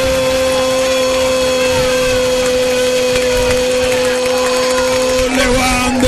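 Male radio football commentator's long, drawn-out goal cry, "gol" held on one steady, slightly falling note for about five seconds, breaking briefly near the end and then taken up again.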